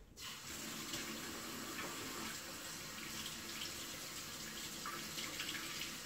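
Kitchen tap running steadily into a stainless steel sink while a siphon tube is held under the stream to fill it with water. The flow comes on suddenly right at the start.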